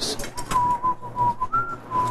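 Handsaw cutting through a board in back-and-forth strokes, about two a second, with a thin whistling tone held over it that steps up in pitch briefly and drops back.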